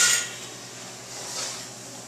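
Kitchen oven being opened and a baking dish pulled off the rack with an oven mitt: a sharp metallic clink with a brief ring at the start, then soft scraping and rustling.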